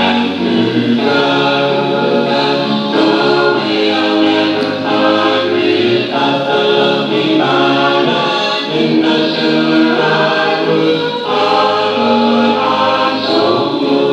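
A choir singing a hymn, in held chords that change about once a second.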